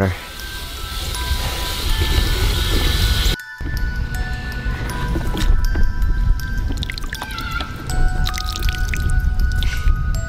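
Background music with sustained notes. Over it, a garden hose sprays water into a plastic tub of mud as a steady hiss for the first three and a half seconds, then stops sharply. After that come wet squishing sounds of hands working mud and gauze in the tub.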